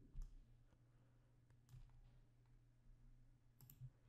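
Near silence with a few faint computer mouse clicks, the clearest just after the start and a small pair near the end.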